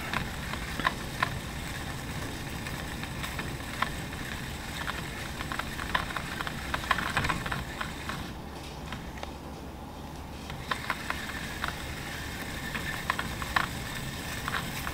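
Shimano Curado DC baitcasting reel being cranked by hand as braided line winds onto its spool: a soft, steady run of reel and line noise with scattered light clicks and ticks, briefly quieter a little past the middle.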